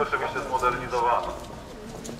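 A voice calling out from within a marching crowd, with wavering pitch, lasting about a second and a half before dropping back to the crowd's background noise.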